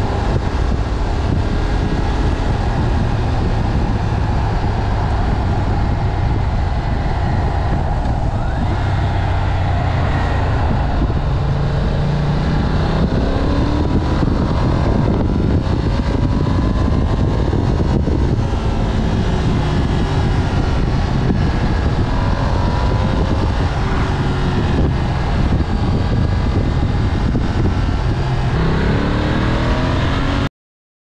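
Ducati Monster's V-twin engine running on the road, heard over heavy wind noise on the microphone. Its pitch rises as it accelerates, once around the middle and again near the end.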